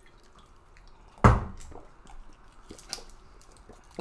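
Bottled water being drunk, with small liquid and swallowing sounds, and one sharp knock a little over a second in.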